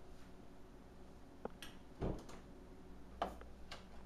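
A few scattered light knocks and clicks, the loudest a dull thump about two seconds in.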